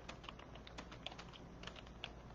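Faint typing on a computer keyboard: a run of quick, irregular key clicks.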